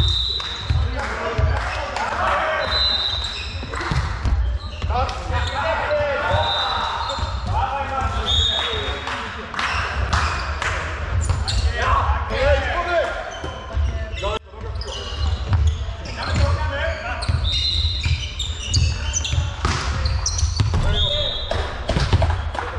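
Indoor volleyball play in a reverberant sports hall: players calling out to each other, the ball being struck and bouncing on the floor, and several short, high squeaks.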